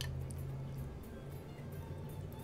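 Quiet room tone: a faint, steady low hum, with one light click right at the start.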